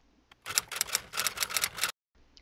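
TIG welding arc on carbon steel, crackling as a rapid, irregular run of sharp clicks. It starts about half a second in and cuts off suddenly near the end.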